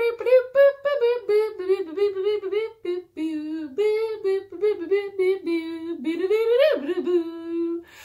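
A woman's voice imitating a saxophone, humming a quick tune of short notes, with a rising slide near the end that drops into one long held note.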